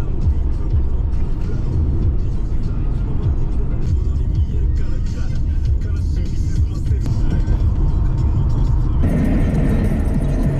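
Road noise inside a moving car's cabin: a steady low rumble from the tyres and the car, turning brighter near the end.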